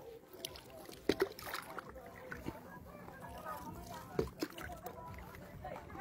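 Faint water lapping and sloshing against a paddleboard, with a couple of soft knocks, one about a second in and another near four seconds.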